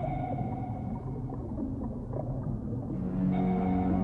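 Submarine sonar pings over a low rumbling drone: a ringing tone that fades over about two seconds, heard twice. A low sustained synth tone swells in near the end.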